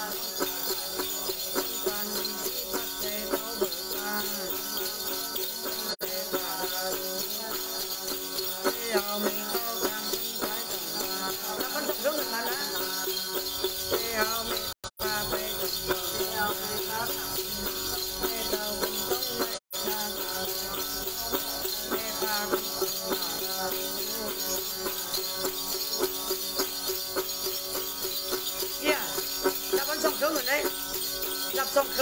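Tày–Nùng Then ritual music: a woman singing to the plucked đàn tính lute, with a bunch of small jingle bells shaken steadily throughout. The sound cuts out briefly twice near the middle.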